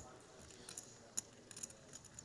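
Faint, sparse clicks of poker chips being handled at the table over quiet room tone, with one sharper click a little past halfway.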